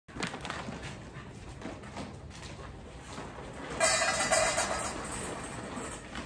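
A bag of dry dog food rustling as it is carried and opened, then kibble poured out about four seconds in, a louder rattling stretch with a ringing tone like kibble hitting a metal bowl.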